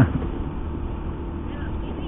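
Honda Beat FI scooter's small single-cylinder engine running at a steady cruise, a low even hum mixed with road and wind noise.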